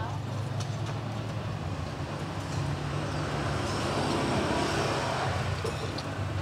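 Street traffic running steadily, a little louder around four to five seconds in.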